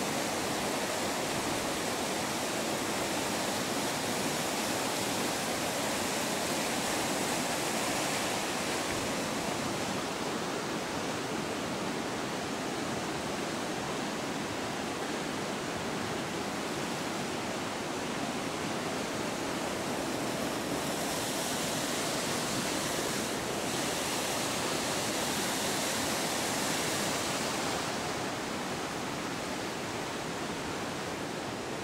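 Water rushing over a mill weir and churning through the mill race, a steady, unbroken rush.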